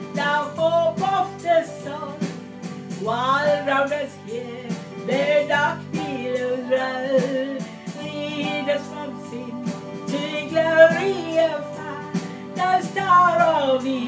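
A woman singing a hymn in a wavering voice over sustained chords from an electronic keyboard.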